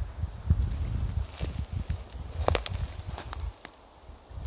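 Footsteps through dry pine needles and leaf litter on a forest floor, with a sharper click about two and a half seconds in.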